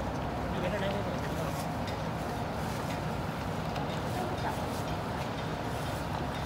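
Outdoor ambience picked up by a camera microphone: a steady low rumble with faint voices in the background.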